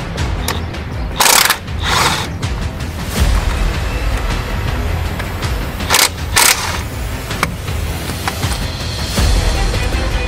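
Cordless impact wrench hammering out the brake caliper bolts in short bursts, two quick bursts about a second in and two more about six seconds in, over background music.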